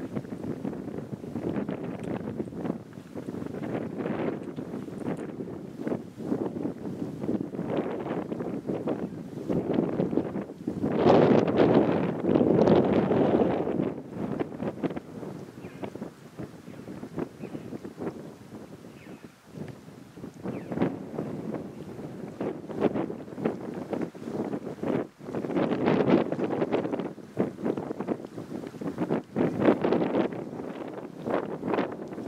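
Wind buffeting the microphone in uneven gusts, strongest about a third of the way in and again near the end.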